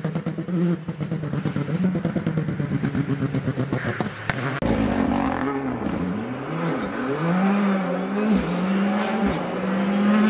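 Rally car engines at full song: one car's engine pulsing and fading as it pulls away, then, after an abrupt change about four and a half seconds in, a second car's engine dipping and rising in pitch several times before climbing steadily as it accelerates out of the bend.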